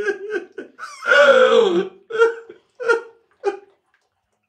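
A man laughing in a quick run of high-pitched bursts, then one longer drawn-out laugh about a second in, then a few short bursts trailing off.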